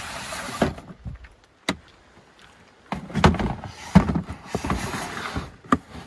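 Plastic storage totes being slid across a wooden floor into an under-bed compartment, scraping and knocking. There is a short scrape at the start, a longer scrape from about three seconds in with heavy knocks as the bins bump into place, and a sharp knock near the end.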